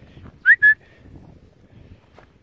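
A person whistling two short notes to call a dog, about half a second in: the first slides upward and the second is held level.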